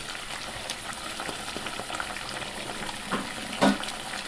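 Tomato chicken curry simmering in a pan, a steady fine sizzle and crackle of the thick gravy cooking, with two light knocks near the end.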